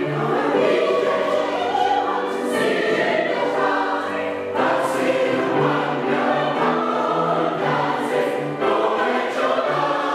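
A mixed-voice SATB community choir singing in parts, holding sustained chords with sharp 's' consonants every second or two.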